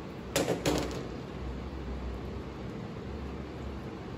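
A brief burst of crackly handling noise from small plastic parts, with a couple of sharp clicks about half a second in, then a steady low hum of room tone for the rest.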